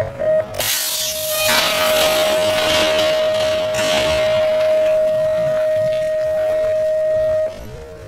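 BMX start-gate light tones, slowed to a third of their speed: short beeps, then the long final tone held steady for about seven seconds before cutting off sharply. From about half a second in, a rushing clatter as the gate drops and the riders push off, loudest over the first few seconds.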